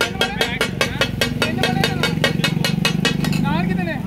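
Metal spatula blades striking a flat iron tawa griddle as minced mutton is chopped on it: the rapid takatak clatter, about six sharp strikes a second. A low steady engine hum runs underneath.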